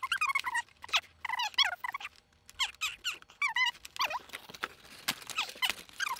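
High-pitched, chipmunk-like squeaky chattering from a voice in fast-forwarded footage. The speeding up raises the speech into short, rapidly bending chirps.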